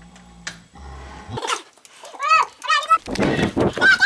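Repeated high wailing cries from a voice, each rising and falling in pitch, starting about a second and a half in, with a loud rush of noise near the end.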